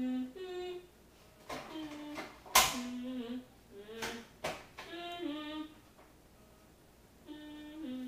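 A girl humming a tune to herself in held notes that step up and down in pitch, in a few short phrases. A sharp knock comes about two and a half seconds in, and there are a couple of lighter taps.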